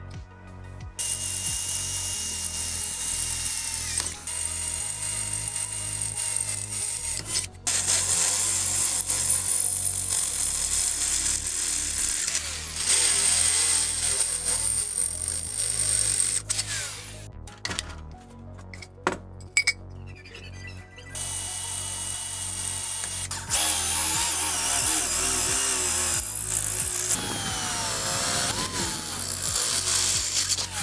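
Electric drill boring through a steel square tube held in a vise, running in long stretches with a short stop and a pause of a few seconds in the middle, its pitch wavering as the bit cuts. Background music plays under it.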